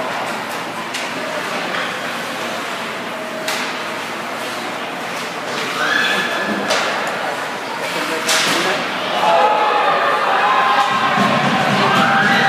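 Ice hockey game in an indoor rink: spectators' chatter and shouts, with a few sharp knocks from play against the boards. The shouting swells louder near the end.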